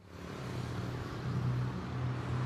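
Road traffic: a car engine running with a steady low hum and a wash of road noise, fading in after a moment of silence.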